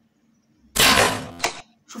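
A bow shot at a goat: a sudden loud crack about three-quarters of a second in, ringing off over about half a second, followed by a sharper knock about half a second later, most likely the arrow striking the animal.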